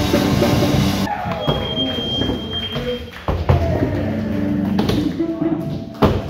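Rock music cuts off about a second in, giving way to live sound of a skateboard on an indoor wooden mini ramp: voices echoing in the large room and a sharp knock of the board hitting the ramp about halfway through.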